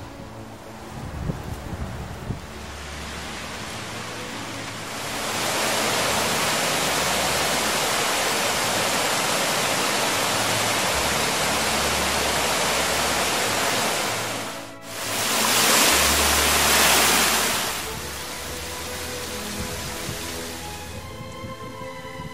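Rushing water of a small waterfall on a wooded hillside stream, a steady hiss that swells in over the first few seconds. It breaks off for an instant about fifteen seconds in, comes back louder for a few seconds, then settles lower. Soft background music runs underneath.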